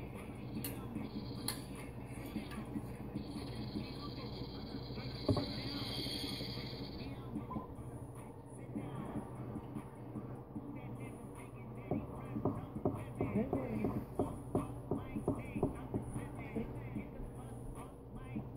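A dab being taken from a glass water rig: a steady hiss of drawn air and vapour runs from about a second in to about seven seconds, then stops. Later, from about twelve seconds, come scattered light clicks and knocks.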